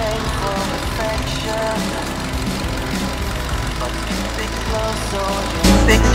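Chevrolet Spark's S-TEC II 16-valve four-cylinder engine idling steadily, heard under background music that turns louder near the end.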